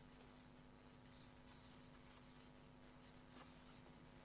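Near silence with faint scratching strokes of a marker pen writing words on a board, over a low steady hum.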